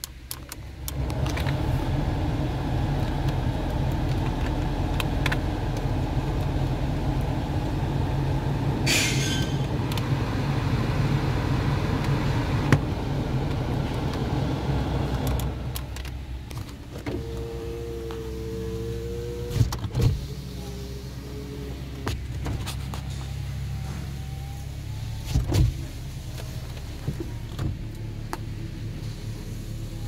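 The 2012 Toyota Corolla's heater/air-conditioning blower fan, switched on at the fan-speed dial, blowing steadily and loudly, then dropping away about halfway through. A brief steady motor whine follows later, along with a few clicks.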